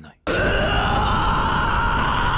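A man's long, loud anguished scream, starting about a quarter of a second in and held at a steady pitch.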